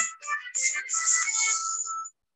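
Tail end of a recorded song: after the singing stops, instrumental music with a few held high notes, which cuts off suddenly at the end.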